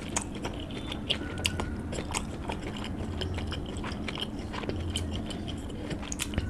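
Close-miked mouth sounds of eating: chewing a mouthful of mutton curry and rice, with many sharp wet clicks and smacks.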